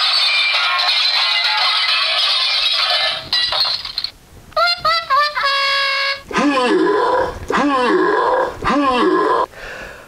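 A canned crash sound effect, a dense clatter of smashing and breaking with no low end, meant to mimic a race-car accident. It cuts off after about three seconds and is followed by a short run of stepped electronic tones, then three swooping, voice-like cries.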